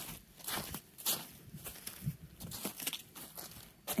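Crunching of crusted snow and ice in a run of short, irregular strokes, about two a second.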